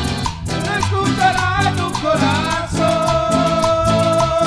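Guaracha dance music played live by a band: a steady, fast percussion beat under a melody, with a long held note from about three seconds in.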